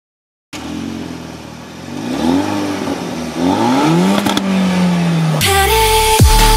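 Car engine accelerating hard through the gears: its pitch climbs, drops back at a gear change, climbs again and then holds steady. Near the end loud electronic music with a heavy bass comes in over it.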